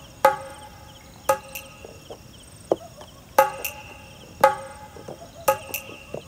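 Crickets chirping in the night, with sharp, ringing knocks about once a second over them, two of the knocks close together near the end.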